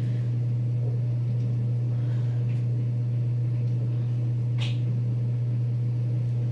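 Steady low hum, with one brief faint rustle about four and a half seconds in.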